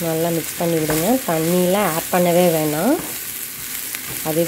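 Ridge gourd pieces sizzling in a nonstick pan as they are stirred with a wooden spatula. Over the sizzle runs a louder series of pitched tones, each held for up to a second and sliding upward at its end, with a short pause about three seconds in.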